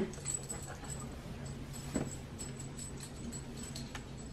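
A dog moving about close by and the rustle of a heavy wool coat being pulled on, with faint small clicks throughout and a soft knock about two seconds in.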